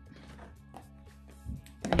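Soft background music playing, with a single brief knock about one and a half seconds in.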